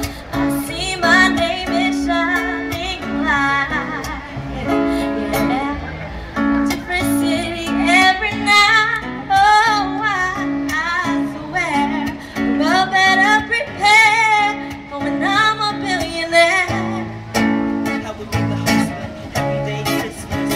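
Acoustic guitar playing chords while a voice sings a wavering melody over it, a live song performance.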